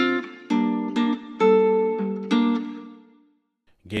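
A guitar part played on its own through a ValhallaRoom reverb in Large Room mode, with a new chord struck about every second. The notes ring on with the reverb tail and fade out about three seconds in.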